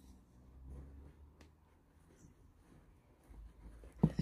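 Near silence, with faint rustling of a fabric grow bag being handled and a single light click about a second and a half in.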